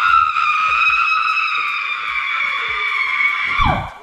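A woman's long, high-pitched scream of joy, held steady for about three and a half seconds, falling away near the end with a brief low thump.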